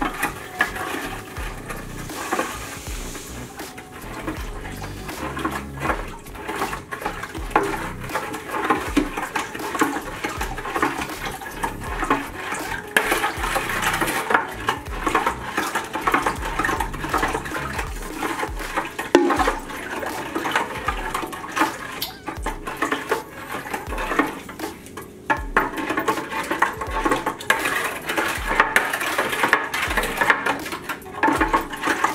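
A long spoon stirring liquid in a large drink dispenser, clinking and scraping against its sides in quick continuous strokes, as powdered lemonade mix is dissolved into pineapple juice.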